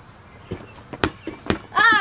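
A rubber playground ball smacking on a concrete driveway and off hands in a game of four square: three sharp knocks about half a second apart. It ends in a short, loud, high-pitched yelp from a startled player.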